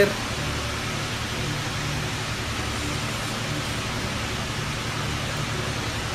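Steady, even hiss of background room noise with a faint low hum underneath, no voice.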